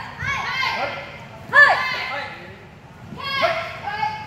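Children's high-pitched voices shouting in three short bursts, the loudest about a second and a half in, echoing in a large hall.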